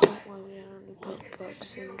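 A single sharp knock right at the start, the loudest sound, followed by a hesitant voice holding a drawn-out 'uh' and a few faint clicks.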